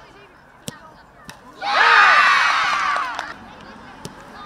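A soccer ball kicked in a penalty shootout: one sharp thump a little under a second in, then a crowd of spectators shouting and cheering for about two seconds before it dies down.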